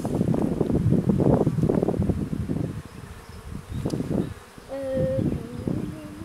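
Honeybees buzzing at an open hive as a comb frame is lifted out, with one bee humming close by at a steady pitch in the last two seconds. A loud rough rustling noise fills the first two to three seconds.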